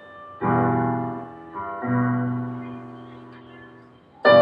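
Electronic keyboard played with a piano voice: a chord struck about half a second in, then two more notes or chords a little over a second later, each left ringing and slowly dying away.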